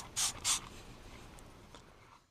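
Hand trigger spray bottle squirting liquid cleaner onto a rubber car floor liner: a few quick squirts about a quarter second apart in the first half second, then a faint fading hiss.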